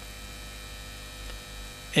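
Steady, low electrical mains hum in a radio broadcast's audio feed.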